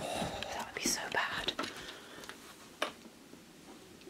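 A soft, breathy whispered voice with a few light knocks from objects being handled.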